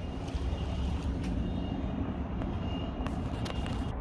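Steady low rumble of city street noise, with a few faint clicks and a faint steady high tone.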